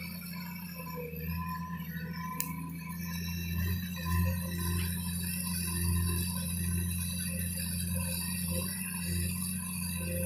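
Komatsu hydraulic excavator's diesel engine running, its low hum swelling and easing as the hydraulics work, with a steady whine above it and a single sharp click about two and a half seconds in.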